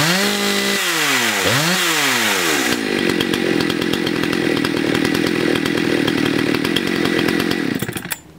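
Husqvarna 272 two-stroke chainsaw being revved, its pitch rising and falling in repeated throttle blips with the chain spinning. About three seconds in it drops back to a steady idle with the chain at rest, and it cuts off suddenly at the very end as the engine is shut down.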